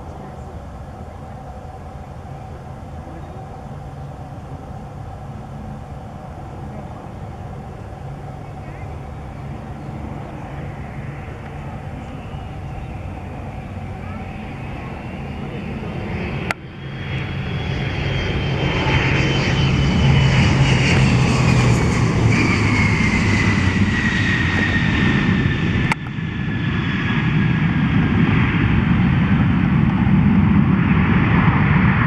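Learjet business jet's twin turbofans on landing approach, growing steadily louder as it nears. From about halfway a high whine falls slowly in pitch over a deep rumble as the jet passes low and lands on the runway.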